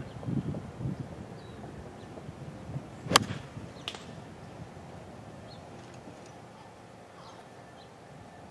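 A golf iron striking the ball off fairway grass: one sharp crack about three seconds in, followed by a fainter tick under a second later.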